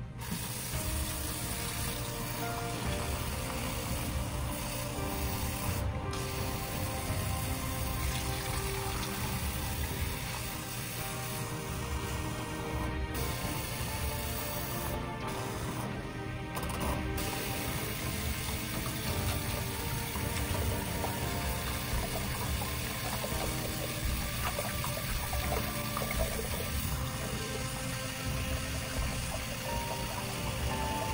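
Bathroom faucet running steadily into a ceramic sink, with splashing as hands rinse a bleached buzzcut head under the stream.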